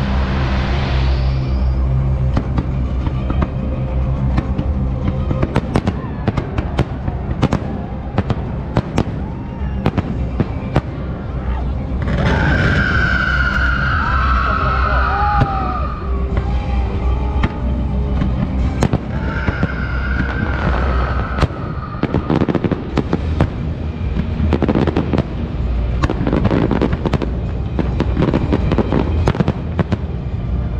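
Fireworks going off in a dense, irregular barrage of sharp bangs and crackles over a steady low rumble, with two stretches of high whistling in the middle.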